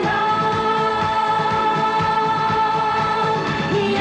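Disco-pop song with a steady drum beat under long held singing and keyboard notes, which stop shortly before the end.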